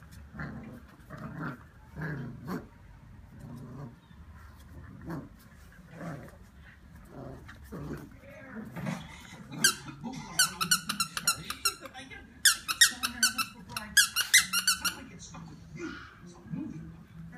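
Brittany puppy growling low while tugging on a plush toy, then the toy's squeaker squeaking rapidly, several squeaks a second, in two long runs over the second half; the squeaks are the loudest part.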